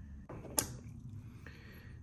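A short rustle and then one sharp click about half a second in as a pen is put down on a plastic cutting mat, followed by faint handling of a wooden dowel.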